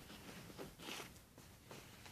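Faint rustling and brushing of denim jeans being handled, with a soft swish about a second in.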